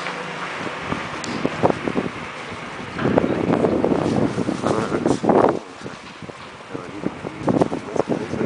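Wind buffeting the microphone of a handheld camera, in gusts, loudest from about three to five and a half seconds in, with scattered short knocks.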